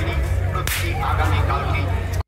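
A handheld toy gun fires once with a single sharp crack, about two-thirds of a second in, over a low hum and faint voices.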